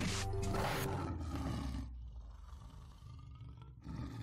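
Logo sting: music with a lion roar sound effect that comes in at once and fades out by about two seconds in, leaving a faint low tail.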